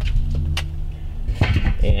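Metal domed lid of a Brinkmann electric smoker set down onto the smoker body, a sharp clank about one and a half seconds in, with a lighter click just before it and a drawn-out spoken "uh" underneath.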